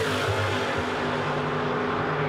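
NASCAR Pinty's Series stock cars' V8 engines running hard at speed, one car passing close by. It is a steady, high engine note.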